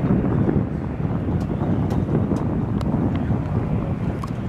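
Radial engine of a Stearman biplane idling as the aircraft taxis, a steady low rumble, mixed with wind rumbling on the microphone.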